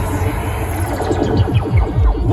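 Loud electronic dance music from a DJ set over the stage sound system, with a run of falling pitch sweeps in the second half.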